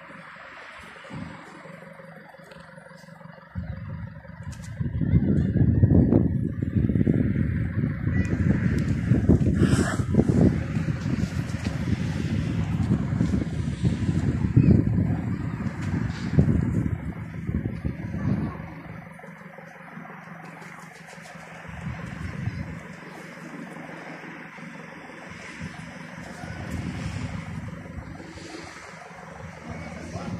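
Wind buffeting an outdoor microphone in uneven gusts for about fifteen seconds, with one sharp gust about ten seconds in, then easing to a quieter steady outdoor noise.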